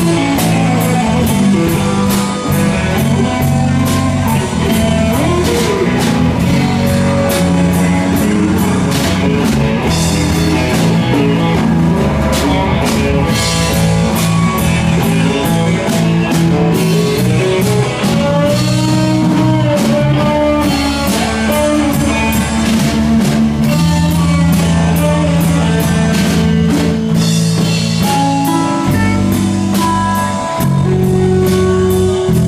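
A live soft-rock band playing in a pub, with guitars over a drum kit, loud and steady.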